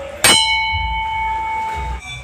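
A hanging metal temple bell is struck once about a quarter second in. It then rings on with a steady, clear tone made of several pitches, until the sound cuts off suddenly.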